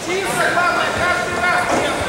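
Indistinct voices talking over one another in a large sports hall: background chatter with no clear words.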